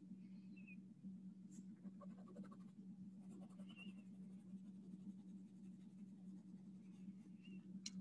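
Faint scratching of a colored pencil shading on paper, over a low steady hum.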